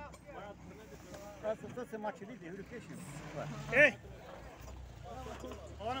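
Faint voices of several people talking in the background, with one louder call a little before the four-second mark, over a low steady hum.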